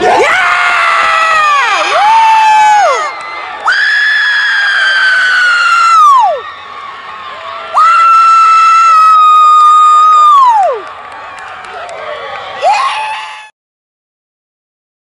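A loud voice screaming in celebration of a goal: a few short yells, then long held screams of two to three seconds each that fall in pitch at their ends, over crowd cheering. The sound cuts off abruptly near the end.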